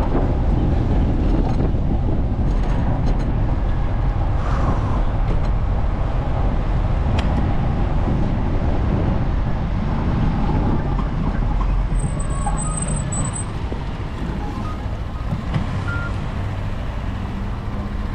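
Steady rush of riding noise and passing city road traffic heard from a moving bicycle. A short high-pitched whistle sounds about two-thirds of the way through.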